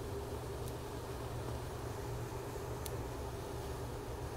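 Steady low hum and airy hiss of grow-tent ventilation running, with two faint light clicks from pruning scissors, about a second in and near three seconds.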